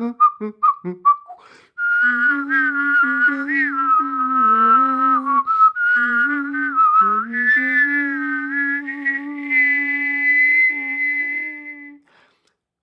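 One person whistling a melody while singing a low note underneath at the same time, two lines of music from one performer. A brief laugh and a few broken fragments come first, then a long unbroken phrase ends on a held high whistled note.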